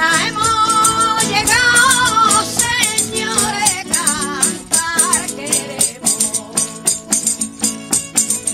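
Flamenco villancico (Christmas carol) played live: a woman's voice sings an ornamented, wavering melody over Spanish guitars, with a hand-held frame tambourine (pandereta) and hand-clapping (palmas) keeping the beat. The singing stops about five seconds in, while the tambourine and guitar rhythm runs on at about three strokes a second.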